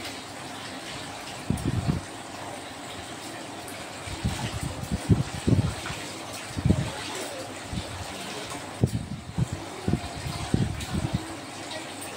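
Clothes being washed by hand in a steel kitchen sink: a wet cloth is squeezed, wrung and dunked in a basin of water, giving irregular splashes and soft thuds.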